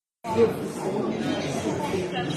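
Indistinct chatter of several people talking at once in a large room, with no clear words standing out. A brief dead gap of complete silence cuts the sound right at the start before the chatter resumes.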